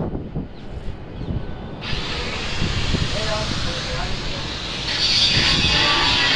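A steady hiss sets in about two seconds in and grows louder near the end, over low knocks and rumble.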